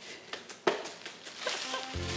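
A few scattered clicks and knocks from handling things at an open fridge, with one louder knock a little over half a second in. Background music comes in near the end.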